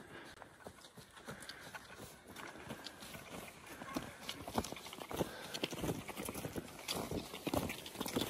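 Footsteps of several hikers crunching on packed snow, with the clicks of trekking poles, an irregular run of steps that grows louder as the walkers come closer.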